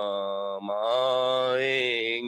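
A man's voice chanting Urdu devotional poetry in long, held, slightly wavering notes, with a brief break just over half a second in.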